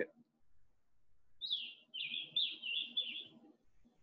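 A songbird singing about a second and a half in: a short down-slurred note, then a quick run of warbled high notes lasting a little over a second.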